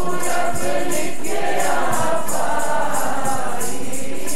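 Group of voices singing a devotional hymn together, over jingling hand percussion that keeps a steady beat of about three to four strokes a second. The singing swells about a second in and eases near the end.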